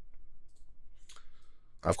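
A pause between a man's sentences: a faint low steady hum with a few soft clicks about half a second and a second in, then a man starts speaking near the end.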